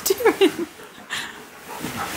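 Husky-malamute cross making a quick run of short whiny, talking-style vocalizations, each sliding down in pitch, in the first half-second. A brief rustle follows about a second in.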